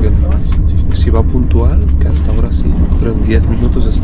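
Steady low rumble of a moving TGV high-speed train heard from inside the passenger carriage, with voices talking intermittently over it.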